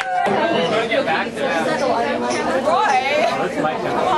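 Group chatter: several people talking over one another at once.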